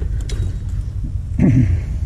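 Steady low rumble in the background, with a short, falling vocal sound from a man about one and a half seconds in.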